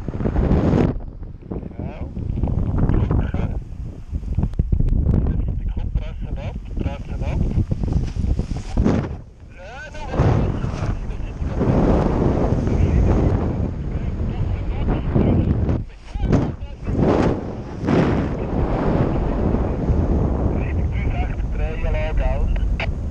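Wind rushing and buffeting over an action camera's microphone in paraglider flight, swelling and easing as the wing banks through steep turns, with brief lulls about halfway through and again a few seconds later.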